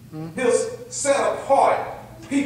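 Only speech: a man preaching.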